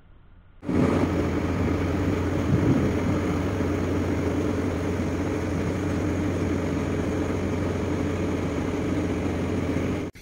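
Steady low engine drone with wind and water noise, heard aboard a vessel underway in a harbour; it starts about half a second in and holds even throughout.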